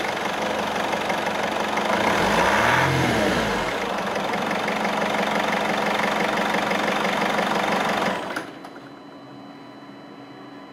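Mercedes common-rail diesel engine running just after being started. It is revved once, rising and falling about two to three and a half seconds in, then settles back and stops about eight seconds in.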